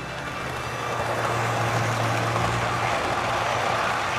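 Model train running along its track, a steady rumble of wheels on the rails over a low motor hum.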